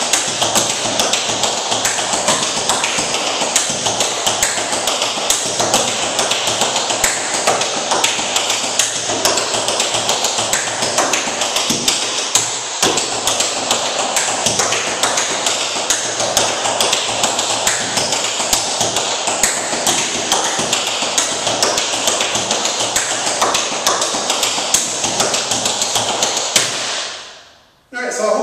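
Tap shoes striking a wooden tap board in a fast, continuous run of taps, a tap-dance step with a triplet-feel rhythm. The sound fades out near the end.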